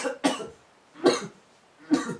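A person coughing in a fit: three short, separate coughs about a second apart.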